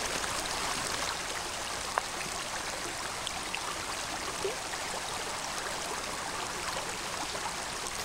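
A creek running steadily, an even, continuous rush of water with a small tick about two seconds in.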